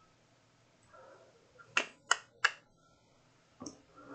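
Computer keyboard keystrokes: three sharp clicks about a third of a second apart near the middle, then one softer click near the end.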